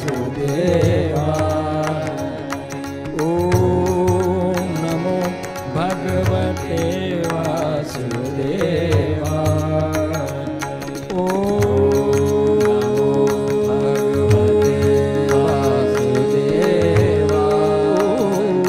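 Hindustani classical devotional music: a voice sings long held notes that slide into pitch over a steady low drone. From about eleven seconds in, a single note is held for some seven seconds.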